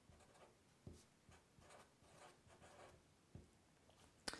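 A felt-tip marker pen writing a word by hand: faint, short strokes one after another as the letters are drawn.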